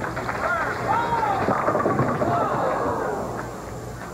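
Bowling ball crashing into the pins with a short clatter right at the start, followed by spectators' voices that rise and fall for a couple of seconds in reaction to the shot.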